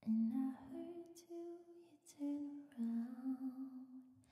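A woman's voice singing a slow melody close to a handheld microphone, unaccompanied, in long held notes that step up and down with brief breaks between phrases.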